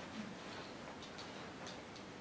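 Quiet room with a few faint, irregular light clicks from a pair of spectacles being handled, unfolded and put on.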